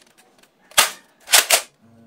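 Spring-powered foam dart blaster being primed and fired: one sharp clack about a second in, then a quick pair of clacks half a second later.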